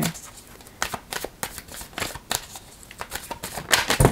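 A tarot deck being shuffled by hand: a run of quick card flicks and taps, with a louder flurry near the end.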